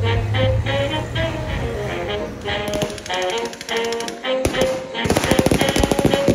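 Background music with a melody, joined partway through by gunfire from reenactors' blank-firing weapons, which peaks as a rapid, loud burst of shots near the end.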